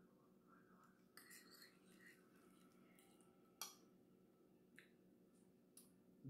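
Near silence: room tone, with a few faint soft noises about a second in and a brief faint click a little after three and a half seconds.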